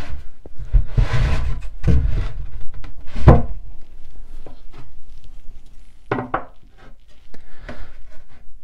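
Plywood shelf and upright panel being knocked and scraped into place by hand: a series of wooden thunks and rubbing scrapes, the loudest about three seconds in.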